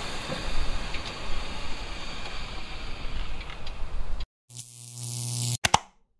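Wind buffeting the microphone over an outdoor hiss, with a few faint ticks, for about four seconds. The sound then cuts off suddenly and gives way to a short electronic sound effect, a steady low hum under a rising hiss, which ends in two sharp clicks.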